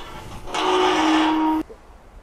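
Galvanised steel sheep-yard gate or sliding hurdle being slid along, metal scraping on metal with a steady ringing tone for about a second, stopping abruptly.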